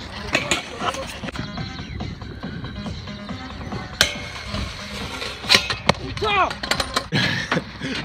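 Music plays throughout with voices over it. A single sharp clack comes about four seconds in, and a couple more knocks follow shortly after: a stunt scooter's deck and wheels striking a metal grind rail.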